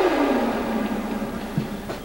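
Synthesizer transition effect: a steeply falling swoop that lands on a held low tone, which slowly fades away.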